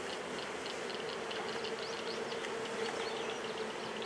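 Honey bees from an open hive buzzing in a steady, even hum of many bees: the sound of a strong, busy colony exposed during a hive inspection.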